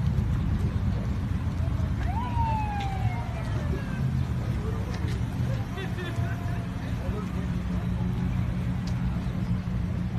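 Ambulance engine running with a steady low rumble. About two seconds in comes a single short siren whoop: a quick rise, then a tone falling slowly for nearly two seconds.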